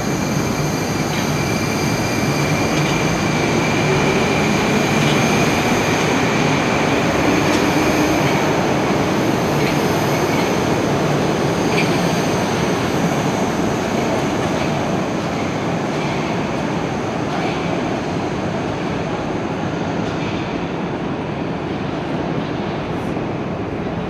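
An Oka 81-760/761 Moscow metro train pulling out of the station: its traction drive whines upward in pitch as it accelerates over the first several seconds, with a steady running hum and a scattered clicking of wheels over the rails. The sound fades gradually toward the end as the last car leaves.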